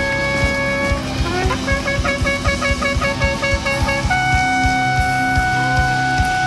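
A long spiral shofar is blown through a microphone. It sounds one held note, then a quick string of short blasts from about a second and a half in, then a long, higher held note from about four seconds in. A regular drum beat runs underneath.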